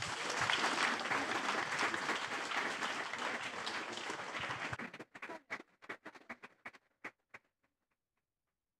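Audience applauding: a full round of clapping that thins out about five seconds in to a few scattered claps and stops.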